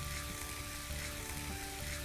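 Green peas and masala paste sizzling in a hot nonstick pan as they are stirred with a silicone spatula, under background music holding steady notes.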